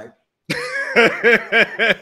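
A man laughing out loud: a run of quick 'ha' pulses, about three a second, starting about half a second in.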